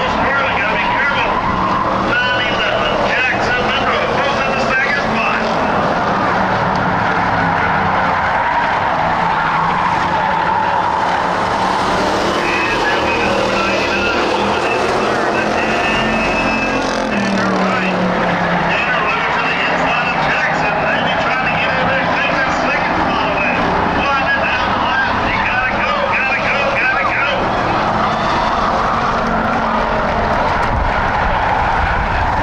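A field of Ford Crown Victoria V8 race cars running flat out on a dirt oval, a steady loud drone of engines rising and falling in pitch as cars accelerate and pass, with a car going by close around the middle.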